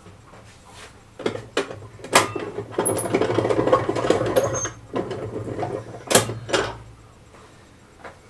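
Steel chains rattling and clinking against a stainless steel stockpot as the pot of Parmesan curds, hung in a hot water bath, is lowered further to bring the curds up to temperature. A few sharp clinks, a dense rattle of about two seconds in the middle, then two more clinks near the end.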